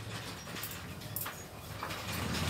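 Silk saree fabric rustling and swishing in a few short strokes as it is shaken out and handled, over a steady low electrical hum.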